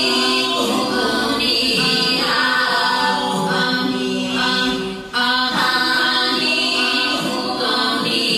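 Unaccompanied choir singing long, sustained notes in several layered voice parts; the phrase breaks off briefly about five seconds in and a new phrase begins.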